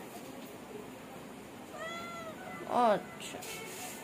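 Domestic cat meowing twice: a faint, high, short meow about two seconds in, then a louder meow that falls in pitch just under a second later.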